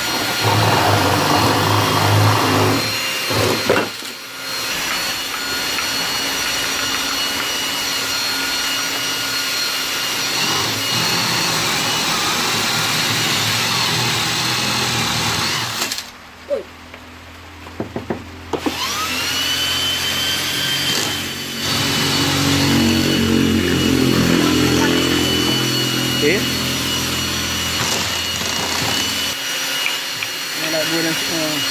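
Electric drill boring into a block of wood with a spade bit, its motor whining steadily under load. The drill stops for about two seconds past the middle, then spins up again with a rising whine and runs on.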